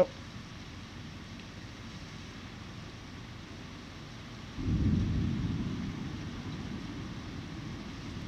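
Thunder: about four and a half seconds in a low rumble starts suddenly, then slowly fades away. Before it there is only a steady faint hiss of rain and background noise.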